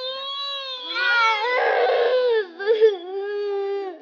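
A young schoolgirl wailing in play-acted crying, long drawn-out 'nguaaa' cries: a held wail that grows louder and rougher in the middle, breaks briefly, then settles into a lower held wail.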